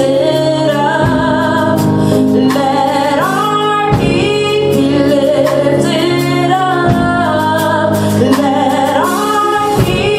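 A woman singing a gospel worship song into a microphone, long held notes with vibrato and sliding pitch, over sustained keyboard chords that change every few seconds.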